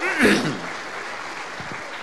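Audience applauding steadily, with a brief voice rising over the clapping near the start.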